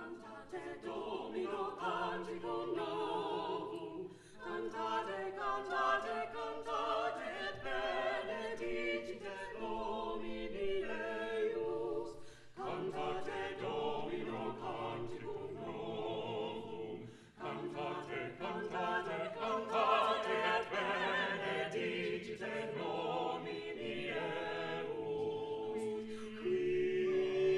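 Mixed-voice a cappella ensemble of seven singers, men and women, singing unaccompanied in several-part harmony. The singing starts right at the beginning, with short pauses between phrases.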